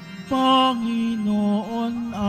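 Sung hymn at the start of Mass: held notes with a slight waver, a new phrase beginning after a short breath about a third of a second in.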